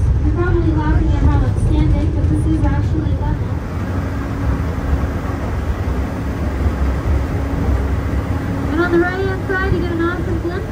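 Steady low rumble of a Mount Washington Cog Railway train running up the mountain, with a high-pitched voice talking over it in the first few seconds and again near the end.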